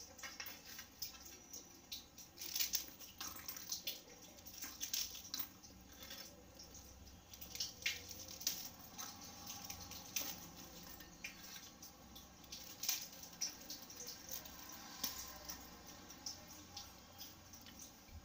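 Dry rusks being broken into pieces by hand: faint, irregular crisp snaps and crackles, with small knocks as pieces drop into a stainless steel mixer jar.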